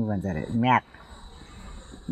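An elderly woman's voice speaks briefly and stops just under a second in. Then comes a pause in which insects can be heard chirring steadily at a high pitch in the background.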